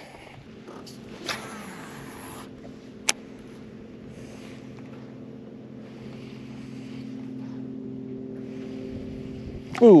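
Steady electric hum of a bow-mounted trolling motor holding the boat, with a brief high hiss about a second in and a single sharp click around three seconds in.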